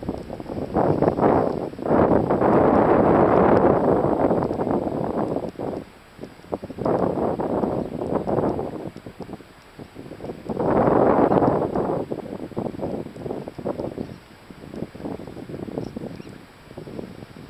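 Wind buffeting the camera microphone in gusts: a long loud gust a couple of seconds in and another about two-thirds of the way through, with quieter lulls between.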